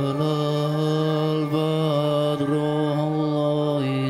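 Slow live music in a chant-like style: long, steady held notes over a low drone, with the harmony shifting about a second and a half in and again near the end.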